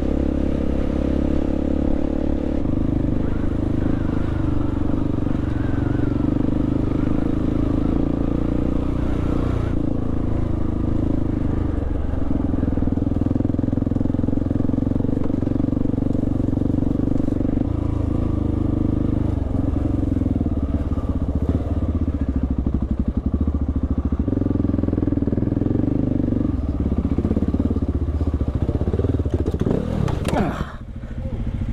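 Dual-sport motorcycle engine running under way, heard from on the bike, its steady note dropping and picking back up several times as the throttle changes.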